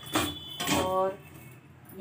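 Two short clinks of steel kitchen dishes being handled, about half a second apart.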